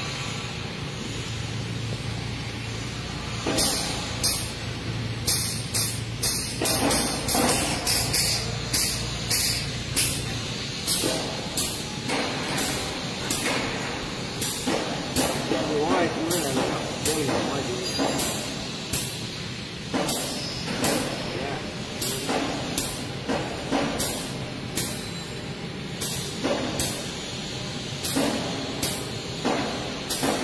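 Air-powered grease gun pumping grease into a tracked loader's track tensioner, hissing in short spurts about once or twice a second from a few seconds in, over a low machine hum.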